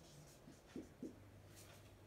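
Faint marker strokes on a whiteboard, with two short scratches about three-quarters of a second and a second in, over a low steady room hum.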